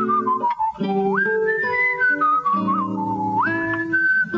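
A man whistling a jazz melody over guitar chords, the whistle a clear high tone that swoops up sharply about a second in and again near the end.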